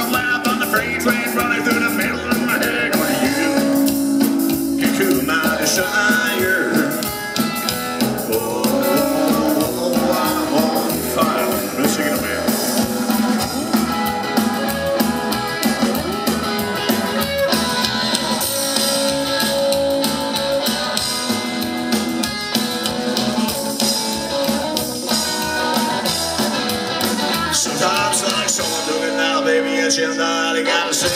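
A psychobilly band playing live: electric guitar, upright bass and drum kit in a steady, loud instrumental passage between vocal lines.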